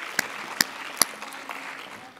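Applause fading out, with three sharp, close hand claps at the podium microphone in the first second, then only the thinning patter of the audience.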